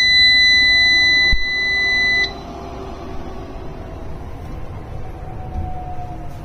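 SolarMax Orion Dual 6 kW inverter's buzzer giving one long, steady beep as the inverter is switched on; it cuts off sharply about two seconds in. A quieter steady hum remains after it.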